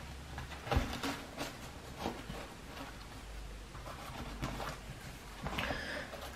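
Handling noise of small gear being moved about inside a fabric survival-kit pouch: a few scattered light clicks and knocks, the loudest about a second in.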